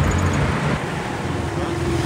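Open jeep's engine idling steadily while it sits in place: the engine turns but the jeep will not drive, a fault the owner first put down to burnt-out clutch plates.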